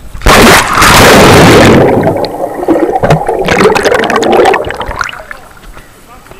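Pool water splashing and bubbling around an action camera as it goes under. A sudden loud rush of water comes about a quarter second in. Gurgling with sharp clicks follows and dies away about five seconds in.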